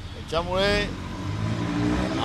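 A road vehicle's engine running and pulling away close by, a low steady hum that rises through the second half. A person's voice is heard briefly about half a second in.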